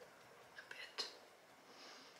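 Very quiet room tone with a couple of softly spoken words about a second in.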